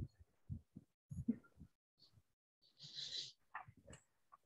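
Faint, scattered short noises picked up through a video call's open microphones, with a brief hiss about three seconds in.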